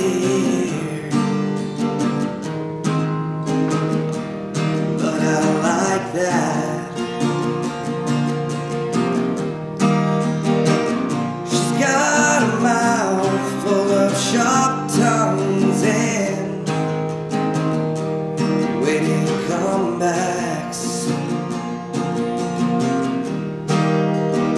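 A man singing while strumming a steel-string acoustic guitar in a steady rhythm, the voice coming in phrases over the strumming.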